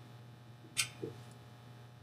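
A sharp click followed about a quarter second later by a duller knock, from hands working at the plastic housing of a small blower fan while trying to open it.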